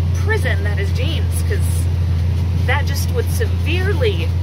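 Tractor engine running under load with a steady low drone, heard from inside the cab while it pulls an anhydrous ammonia applicator.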